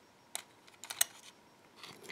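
Metal tweezers picking up a small lock pin: a few light, sharp clicks as the tips touch and grip the metal pin, with a quick cluster of clicks about a second in.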